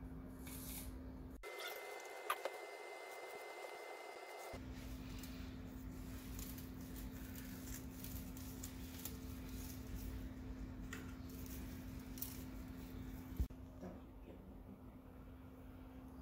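Scissors cutting through a long strip of pond filter foam: a run of quiet, soft snips with scattered short clicks, over a faint steady hum.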